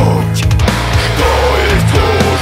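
Groove metal band playing: heavy distorted guitars riffing low and downtuned in a stop-start chugging pattern, with bass and drums.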